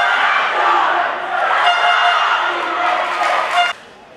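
Women's football team in a pre-match huddle shouting a rallying cry together, many voices at once with held pitched shouts, cut off suddenly near the end.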